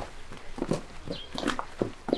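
Soft, irregular footsteps and shuffling of people moving about on grass, several short knocks a second.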